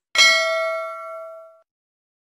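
A single bell-like ding sound effect, struck once and ringing out for about a second and a half as it fades: the notification-bell chime of an animated subscribe-button end screen.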